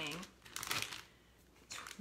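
Plastic bag crinkling briefly, about half a second in, as it is handled.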